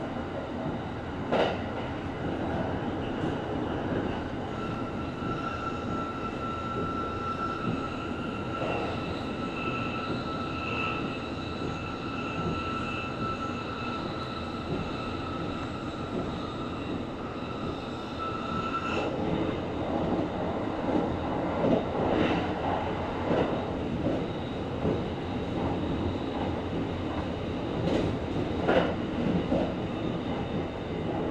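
Kintetsu Series 23000 Ise-Shima Liner electric train running at speed, heard inside its front passenger cabin: a steady rumble of wheels on rail, with a high steady whine from about five seconds in until about nineteen seconds. After that the rumble grows rougher and a little louder, with a few sharp clicks near the start and near the end.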